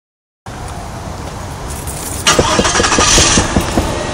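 Silence, then a car's engine running, heard from inside the car's cabin. The noise gets louder about two seconds in.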